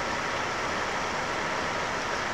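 Steady, unchanging hiss of recording noise with a faint thin whine held on one pitch.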